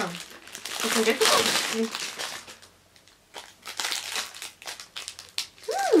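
Wrapping paper crinkling and rustling as a gift is unwrapped by hand, in two bouts with a short pause in between.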